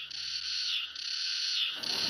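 Cicadas buzzing in a high-pitched chorus that swells and falls about twice a second, with a faint low hum dying away about a second in.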